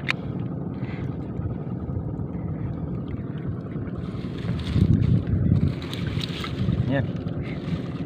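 Wind rumbling on the microphone, with water splashing and seagrass rustling as hands search through shallow tidal water. The splashing grows louder for about two seconds midway.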